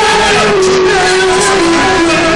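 Loud, distorted live music from a stage performance, with a held note that slides slowly downward.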